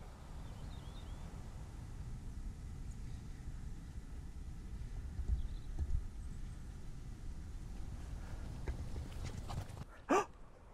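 Low, steady rumble of wind and handling on the microphone outdoors, with a few soft thumps about halfway through and faint bird chirps early on.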